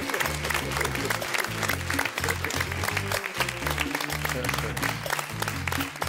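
Hand clapping from the studio panel and audience over upbeat music with a bass line.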